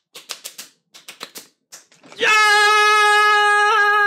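Hands slapping together in quick runs of three or four, fists pounding into palms in a hand game, then about two seconds in a man lets out one loud, long held shout at a steady pitch in triumph.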